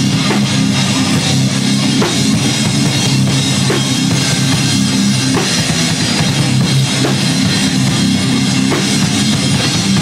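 Metalcore band playing live: a drum kit and heavy distorted guitars, loud and steady.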